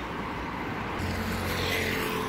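Road traffic passing close by, with a motor scooter's engine hum coming up about a second in.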